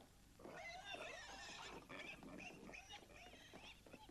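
Faint animal cries, wavering and high-pitched, starting about half a second in.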